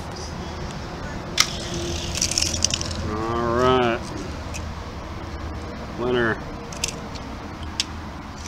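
A child's voice calling out twice in short wordless sounds, the first rising in pitch, with a single sharp click and a brief rustle before it, over a steady low background hum.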